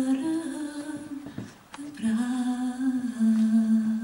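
A solo voice singing unaccompanied, a slow melody in long held notes: one phrase ends about a second in, and after a short pause a second phrase begins.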